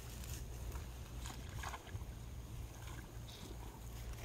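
Outdoor wind rumbling steadily on the microphone, with a few faint brief rustles.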